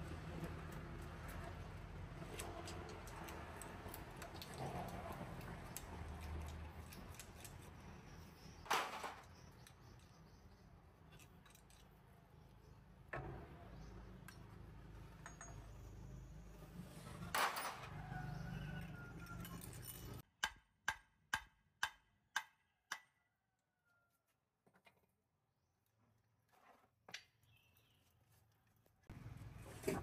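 Pliers and steel parts clinking and scraping in a truck's rear wheel hub as a splined gear shaft is pulled out, over a steady low hum. About two-thirds of the way in the hum drops away and a quick run of about six sharp metal clicks follows.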